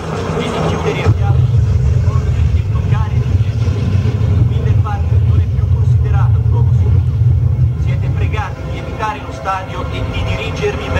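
Harsh noise recording: a heavy, steady low rumble with short wavering voice-like cries above it; the rumble eases about eight seconds in, and the cries come more often.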